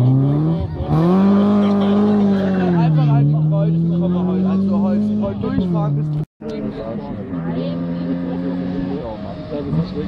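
BMW E30 rally car's engine accelerating away out of a corner, its pitch rising and falling through the gear changes. The sound cuts off abruptly about six seconds in, then another rally car's engine is heard approaching at a steadier pitch.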